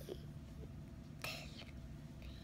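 A low steady hum with one brief, soft whisper a little over a second in.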